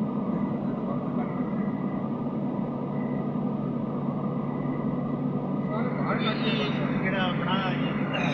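Steady road and engine noise heard from inside a car driving through a road tunnel. A voice comes in about six seconds in.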